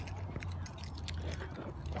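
Low steady rumble of a vehicle, with light metallic jingling and small clicks scattered throughout.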